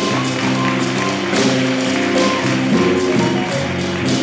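Small jazz combo playing: a saxophone carries the line over piano, electric bass, guitar and drum kit, with cymbals struck in a steady beat.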